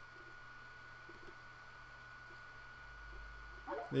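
Quiet room tone with a faint steady high-pitched whine and a low hum from the recording setup, and a faint low rumble that swells about three seconds in.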